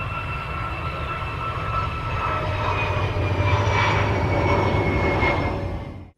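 EA-18G Growler's twin jet engines at takeoff thrust as it rolls down the runway past the listener: a steady jet noise with whining tones that slowly fall in pitch. It grows louder to a peak about four seconds in, then fades out near the end.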